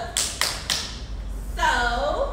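Dancers' sharp claps and stomps on a hard floor, three quick hits in the first second, then voices calling out near the end.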